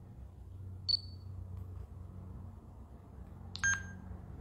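Two short electronic beeps over a low steady hum: a single high beep about a second in, then a lower double beep near the end.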